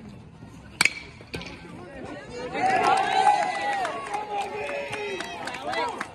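A single sharp, ringing ping of a metal baseball bat striking the ball about a second in. From about two and a half seconds on, spectators shout and cheer loudly as the play unfolds.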